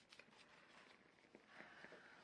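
Near silence: room tone with a few faint ticks and a faint, brief rustle near the end.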